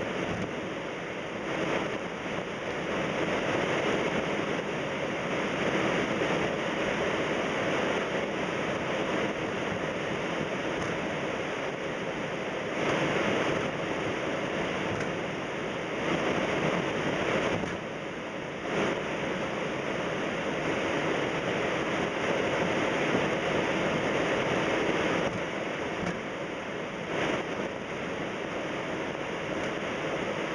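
Steady rushing noise of a Boeing 767 taxiing at night, heard from inside the cockpit, with slow swells and dips in level.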